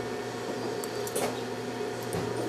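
Quiet room tone with a steady low electrical hum, and a few faint short clicks about a second in.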